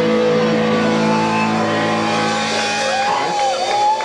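Distorted electric guitars and bass of a live metal band holding one final chord that rings out steadily and fades about three seconds in, as a high wavering tone comes in above it near the end.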